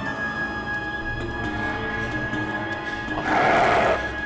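Suspenseful background music of held, sustained notes. Near the end a loud, harsh sound effect cuts in for under a second.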